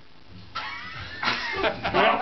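Quiet room sound, then men's voices and laughter starting about half a second in, in short bursts.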